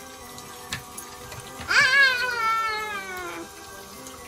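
Water trickling down the plastic chutes of a toy sōmen-noodle slider, with background music. About two seconds in comes one long, high, wavering call that rises quickly and then falls slowly in pitch, lasting under two seconds.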